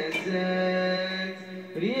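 A single voice singing a slow Islamic devotional chant, holding one long note and then sliding up into the next phrase near the end.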